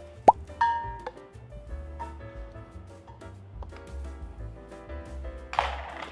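Background music with an edited cartoon 'bloop' sound effect, a quick upward pitch sweep about a third of a second in, followed by a short ringing tone. Near the end a brief rush of noise.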